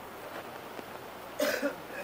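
A man's short double cough about a second and a half in, over faint steady background hiss.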